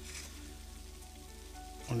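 Chicken wings sizzling faintly in a Tefal ActiFry air fryer, over the machine's steady low hum.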